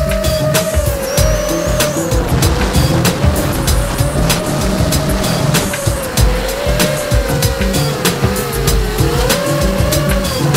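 Brushless motors of an Emax 250 racing quadcopter whining in flight, their pitch wavering up and down with the throttle. Funky background music with a steady beat plays underneath.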